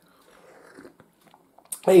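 A man sipping and swallowing buttermilk from a cup: faint slurping and gulping, with a small click about halfway through.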